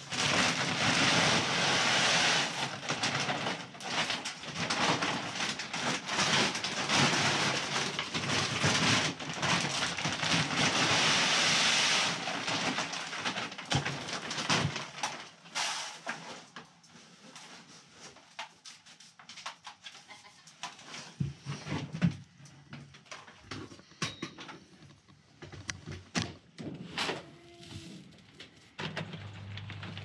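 Grain feed pours from a feed bag into a plastic drum: a loud, steady hiss for about twelve seconds that then thins out. Bag rustling and scattered light clicks follow, and a goat bleats briefly near the end.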